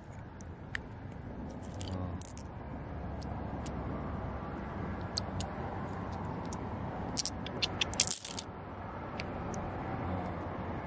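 Small hard pieces (shells, stones and glass pebbles) clicking and scraping against each other as a hand sifts through them in shallow water, over a steady low rushing noise. The clicks come scattered, then in a quick cluster about three-quarters of the way through, the loudest near eight seconds in.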